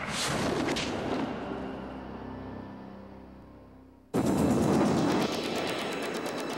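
Dramatic title-sequence sound effects: a loud crash-like boom that dies away over about four seconds, then a sudden burst of rapid, gunfire-like hits.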